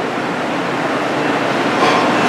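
A steady, even rushing noise with no speech, holding level throughout.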